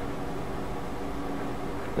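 Steady whirring hum and hiss of cooling fans in bench electronics running under load, holding an even level throughout.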